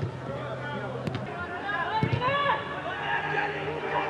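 Men's voices calling out around a football pitch. Two sharp knocks come about one and two seconds in.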